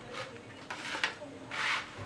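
Dry, oven-toasted flour-and-sugar crumble (granza) being rubbed and pushed across a baking tray by hand, as about three soft, gritty swishes.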